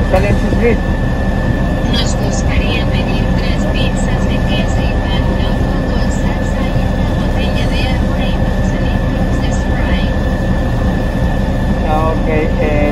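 Steady low rumble of the stopped car idling, heard from inside the cabin, with a faint steady whine above it and muffled, indistinct voices in the background.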